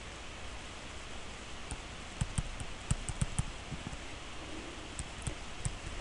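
Stylus tapping and scratching on a tablet surface while handwriting, a string of small irregular clicks over a steady hiss.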